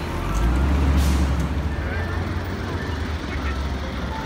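City street traffic with a large vehicle's engine rumbling close by. The rumble swells about half a second in, and a brief hiss comes at about one second.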